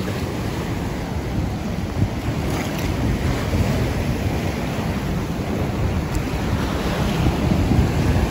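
Small sea waves breaking and washing up a sandy shore, a steady rush of surf, with wind rumbling and buffeting on the phone's microphone.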